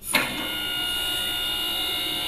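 Electric motor of a garage car lift starting up suddenly and running with a steady whine made of several even tones, a cartoon sound effect heard through a television speaker.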